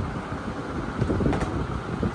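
Steady low rumbling background noise, with a faint click just over a second in.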